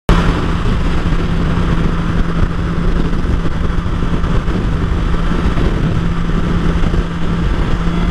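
BMW S1000XR's inline-four engine running at a steady freeway cruise, a constant hum under loud wind and road noise.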